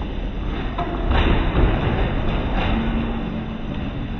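Bumper cars running on a dodgem track: a low rumble with several thuds of cars bumping, louder from about a second in.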